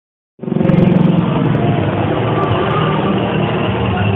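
Helicopter running with a loud, steady rotor and turbine-engine noise over a low hum, cutting in abruptly about half a second in.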